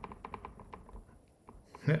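Faint, rapid, evenly spaced clicking, several clicks a second, with a man's voice cutting in near the end.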